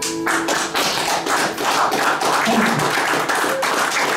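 The final acoustic guitar chord rings briefly and is cut off about a quarter second in, and then a small audience claps: a dense, uneven patter of hand claps.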